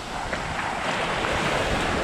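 Small sea waves washing up over a sandy beach, with wind rumbling on the microphone.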